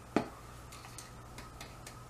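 Hands handling and opening a small cardboard product box: one sharp click just after the start, then a few faint, light clicks and taps.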